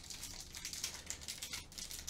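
Faint crinkling of a foil trading-card pack wrapper being torn and peeled open by hand.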